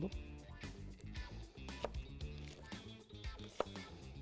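Soft background music, with a few sharp knife chops on a plastic cutting board.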